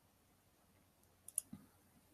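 A computer mouse button clicking two or three times in quick succession about a second and a half in, choosing a menu item; otherwise near silence.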